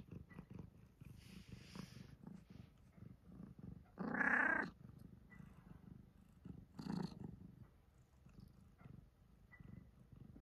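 A domestic cat purring close by, a faint low rumble that pulses steadily. About four seconds in, a brief louder vocal sound rises over it.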